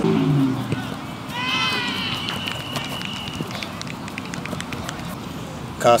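Outdoor sports-field background with distant people's voices: a short low call at the start, then a high-pitched call about a second and a half in that holds one steady pitch for about a second.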